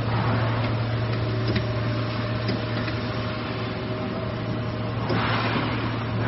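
Steady hum of a running three-layer co-extrusion stretch film machine: a low drone with a thin, higher steady whine over it, and a short swell of hiss about five seconds in.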